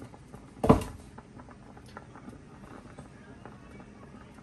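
Pot of beef chunks boiling in water, bubbling steadily with many small pops. A single short, loud thump comes just under a second in.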